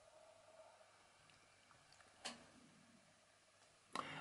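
Near silence: quiet room tone, with one short click about two seconds in.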